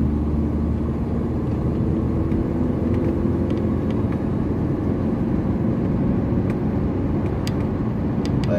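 Steady road and engine rumble of a car on the move, heard from inside its cabin, with a few light clicks near the end.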